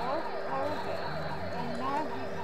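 Synthesiser making a siren-like warbling tone that sweeps rapidly up and down, about four times a second, over a steady electronic drone.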